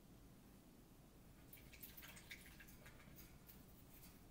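Near silence: faint room tone, with a cluster of soft ticks from a paintbrush working acrylic paint in the middle.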